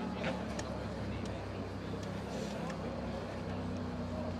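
Ambience of an indoor football match: faint, distant players' shouts and a few short sharp knocks over a steady low hum.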